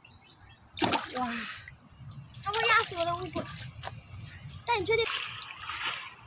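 Water splashing and sloshing in a shallow river, with short exclamations from voices in between; a hissing splash builds near the end.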